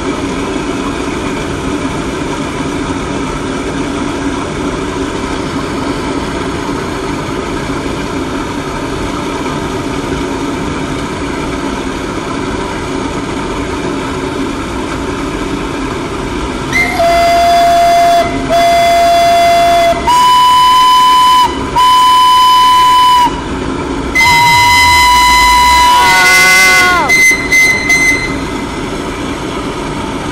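A steam crane's stack rushes steadily as it blasts out flame and sparks. Then a steam whistle sounds in a series of loud blasts: two lower-pitched ones, two higher ones, and a longer one that slides down in pitch before a few short toots.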